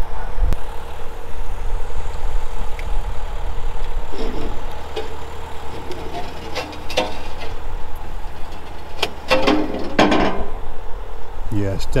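Steady low hum of the crane's engine running as its winches lift the boat, with people's voices heard around the middle and again near the end.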